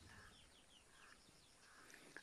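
Near silence with several faint, short, high chirps of birds falling in pitch.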